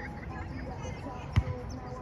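A volleyball struck by a player's hands or arms: one sharp slap about one and a half seconds in.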